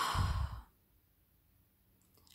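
A woman's short sigh, a single breath out under a second long.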